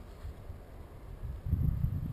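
Wind buffeting the camera's microphone in low, uneven gusts, picking up about halfway through.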